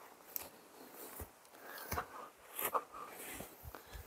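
Faint footsteps crunching on dry grass and gravelly soil, several steps at a walking pace.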